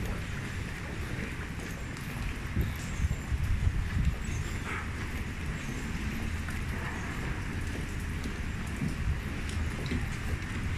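Street ambience on a wet city street: a steady hiss of traffic on the wet road over an uneven low rumble on the phone's microphone, with a few louder bumps a few seconds in.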